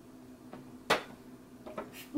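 A glass bowl being picked up and handled at the table: one sharp knock about a second in, with a softer tap before it and a couple of faint ticks near the end.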